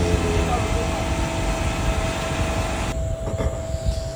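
A steady mechanical whirring hiss with a constant hum-tone, under a man's drawn-out voice that trails off just after the start. The hiss cuts off abruptly about three seconds in, leaving quieter room sound.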